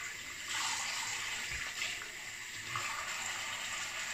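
Bathroom tap running into a sink, with uneven splashing as a freshly shaved face is rinsed with water.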